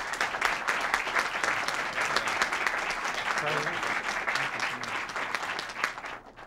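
Audience applauding: many hands clapping at a steady level, dying away near the end.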